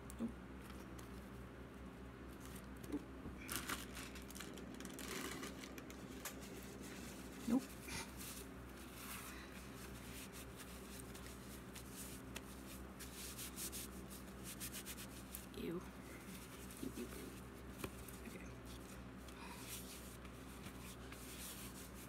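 Faint rustling and handling of a bag and small items on a table, with one sharper knock about a third of the way in, over a steady low hum.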